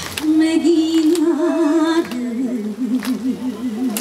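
A woman singing unaccompanied into a microphone through the PA: two long held notes with vibrato, the second lower than the first.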